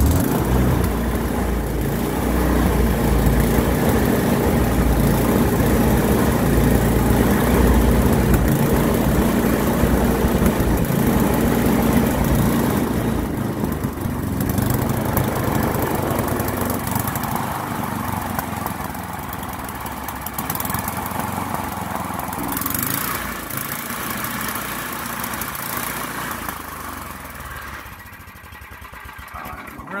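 Two-stage snowblower's small gasoline engine running loudly just after being started. It had been running poorly off choke because of gunk from ethanol fuel, and is being left to run to clear it. It grows gradually quieter over the second half.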